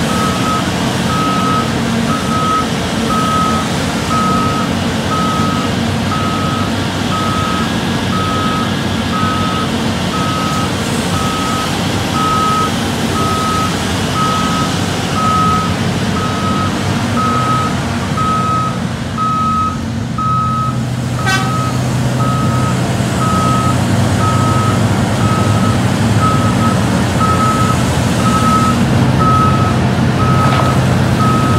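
A reversing alarm beeps steadily, about one and a half beeps a second, over the diesel drone of a Terex RH170 hydraulic mining shovel at work. A short metallic clatter comes about two-thirds of the way through, after which the engine note grows stronger.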